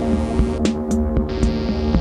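Minimal electronic synthwave: a steady synth bass under a wash of white-noise hiss, with only a few drum-machine hits while the hiss plays.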